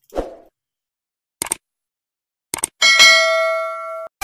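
Subscribe-button animation sound effect: two pairs of short clicks, then a bright bell ding about three seconds in that rings on and fades.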